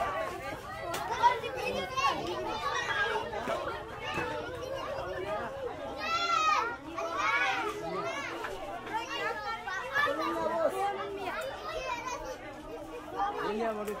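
A crowd of children chattering and calling out over one another, with one child's high-pitched shout about six seconds in.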